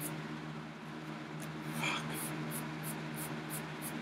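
A cloth wiping a paperback book's cover in quick strokes: a faint rhythmic swishing, about three strokes a second, that thins out in the first second and a half and then picks up again, over a steady room hum.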